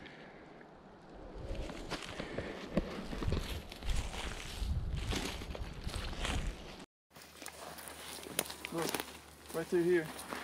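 Footsteps crunching through dry leaf litter and brush on a forest floor, irregular, with low rumble from the walking microphone; it cuts off suddenly about seven seconds in, followed by fainter rustling.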